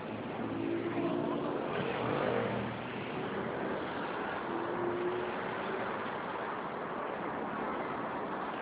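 City street traffic: a steady wash of road noise, a little louder in the first three seconds.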